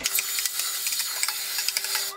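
Dyson cordless stick vacuum running steadily while hoovering out a kitchen drawer: a rush of air with a steady whine over it. It is switched off at the very end.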